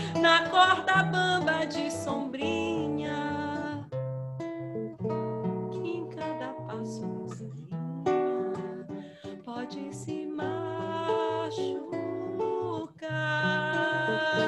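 Acoustic guitar playing a plucked instrumental passage of a Brazilian song, with a woman's voice singing over it in the first seconds and again near the end.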